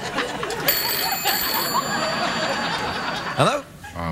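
A telephone bell rings about a second in and fades over the next couple of seconds, heard over laughter.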